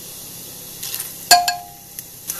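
Hot oil with cumin seeds sizzling steadily in a pressure cooker. About a second and a half in, chopped garlic is tipped in from a bowl with a sharp clink that rings briefly.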